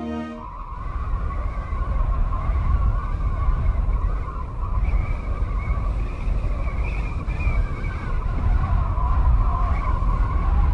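A woman's long, hoarse, distorted scream, held almost without a break, with a heavy low rumble under it.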